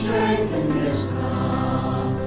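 A choir singing a slow, sung prayer, with held notes over a steady low accompaniment.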